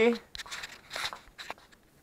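A handful of short crinkling, rustling scratches over about a second.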